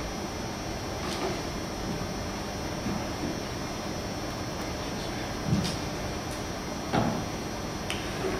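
Room tone of a large lecture hall: a steady hiss with a few faint short knocks, the clearest about five and a half and seven seconds in.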